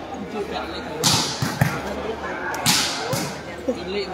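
A volleyball being struck by hand during a rally: two sharp slaps on the ball about a second and a half apart, over the voices of a crowd.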